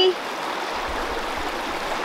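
River water running over rocks: a steady rushing hiss.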